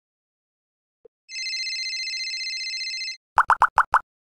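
Electronic logo sound effect: a faint click, then a high steady tone with a fast flutter for nearly two seconds, then five quick rising blips.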